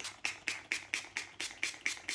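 Mario Badescu facial spray, a pump-mist bottle, spritzed about ten times in quick succession, roughly five short hisses a second, to dampen a makeup sponge.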